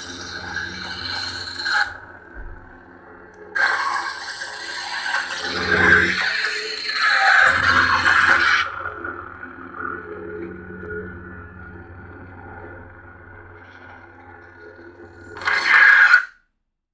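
A lightsaber's CFX soundboard playing through its 28mm speaker: a steady electric blade hum, swelling into louder swing sounds as the hilt is moved in the first half. Near the end a short loud burst, the blade shutting off, then the sound stops suddenly.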